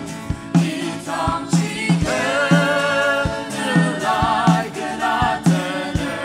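Gospel song sung by a group of voices in harmony, accompanied by a band with a steady drum beat and bass; the voices come in about a second in.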